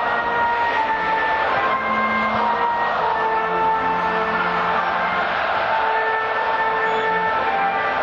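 A national anthem played over a stadium's sound system, a slow melody of long held notes over a steady noisy background.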